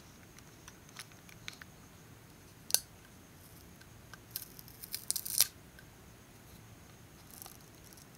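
Faint scattered clicks and light scraping of a precision screwdriver and a slim pry tool on a tiny metal microdrive casing, as the controller board is prised off. There is one sharp click nearly three seconds in, and a quick run of clicks and scrapes about a second later.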